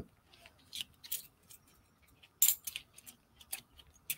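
Scattered light clicks and rustles of small objects being handled on a desk, the loudest a sharp clack about two and a half seconds in.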